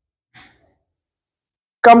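A single short, faint breath from a man, about a third of a second in, in an otherwise near-silent pause. His speech resumes just before the end.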